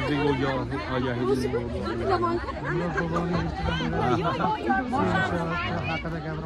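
Several people talking at once, with music playing underneath in held, stepping notes.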